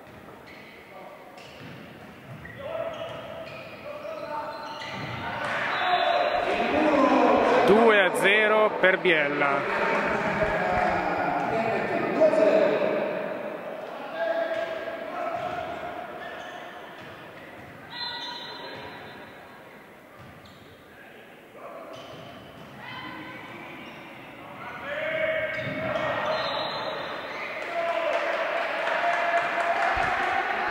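Indoor volleyball rally: the ball is served, struck and hits the floor, with players and spectators shouting, all echoing in a large sports hall. The busiest, loudest stretch comes a few seconds in, and the shouting rises again near the end as a point is won.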